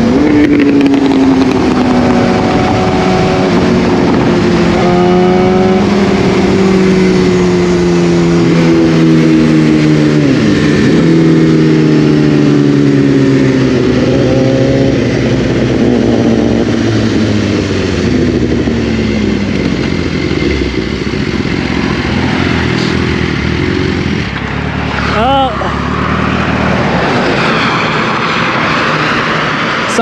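Sport-bike inline-four engine with its pitch falling slowly and steadily over about twenty seconds as the motorcycle slows. Wind rush runs throughout. Near the end the engine sound sinks lower into the wind noise.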